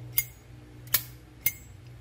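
Brass Zippo Armor lighter lid being flicked open and snapped shut: three sharp metallic clicks, each with a brief ring. This is the lighter's signature click, which the Armor line's thicker case makes sound a little clearer than a standard Zippo.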